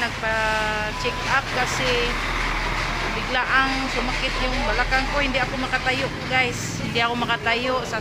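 A woman talking over the low rumble of a motor vehicle going by, louder in the first half.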